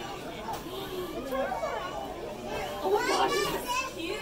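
Indistinct chatter of children and other visitors in a large room, with a child's high voice louder near the end.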